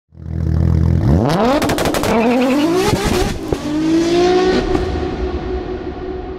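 Car engine idling low, then revving up in three rising sweeps, with a burst of sharp crackles during the first. It ends on a steady higher tone that slowly fades.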